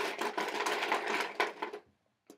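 Slips of paper rustling and rattling as they are stirred in a container to draw the next one. The sound stops a little before the end.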